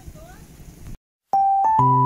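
Low background noise, cut off by a brief moment of total silence about halfway, then outro music on an electronic keyboard begins with steady held notes and chords.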